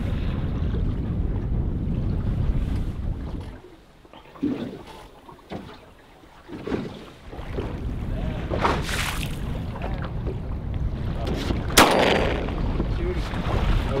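Wind rushing over the microphone and choppy water slapping around a small boat. The rush drops away for a few seconds midway, and near the end comes a single sharp crack.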